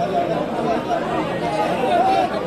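Chatter of many people talking at once, the voices overlapping with no single clear speaker.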